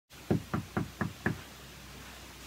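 Five quick knocks on a door, evenly spaced at about four a second.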